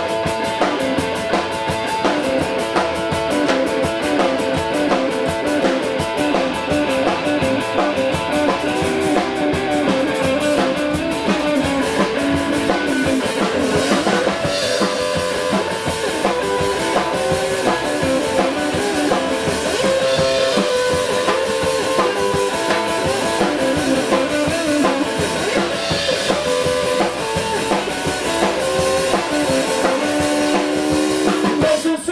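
Live rock band playing an instrumental passage: a hollow-body electric guitar leads over a drum kit, without vocals.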